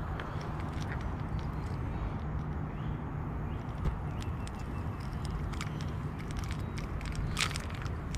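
Handling noise while a small largemouth bass is held and turned in the hand: scattered light clicks and rustles over a steady low hum, with one slightly louder click near the end.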